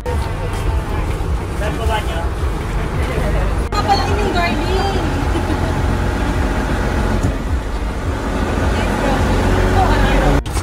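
Passenger boat's engine running with a steady low drone, with people's voices chatting over it.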